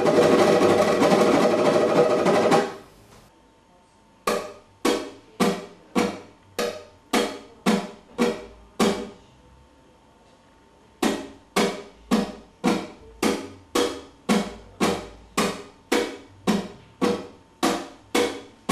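Flamenco guitar rasgueado on the four-stroke (dörtleme) pattern: a fast continuous roll of finger strums for about the first three seconds, then, after a pause, separate strummed strokes at about two a second, broken by another short pause in the middle.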